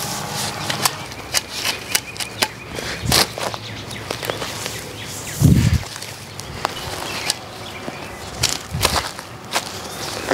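Spade digging up plants in a mulch bed: wood mulch and soil crunching and scraping in a string of short clicks, with a low thump about five and a half seconds in.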